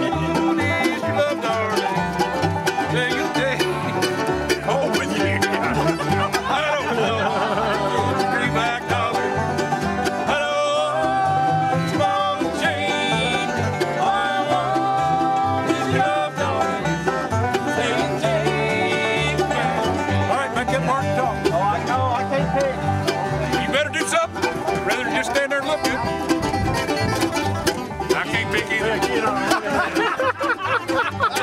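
Bluegrass string band playing a tune together: acoustic guitar and mandolin picking over a steady plucked upright bass line.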